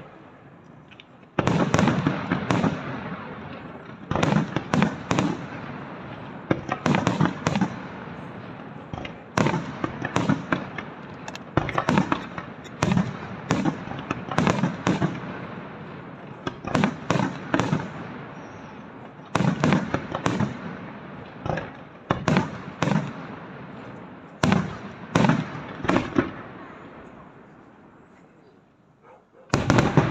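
Aerial fireworks shells bursting in rapid volleys: sharp bangs come in clusters every second or so, with a rolling rumble between them. The barrage starts in force about a second and a half in and dies away near the end, before another loud volley breaks just at the close.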